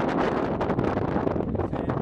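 Wind buffeting a handheld microphone, a dense, steady low noise.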